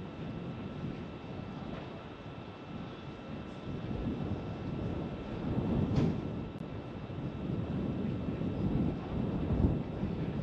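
Rough, unsteady rumble of a Falcon 9 rocket engine burning in flight, carried through the onboard camera audio, with faint steady electronic hum tones above it. The rumble swells about midway and again near the end.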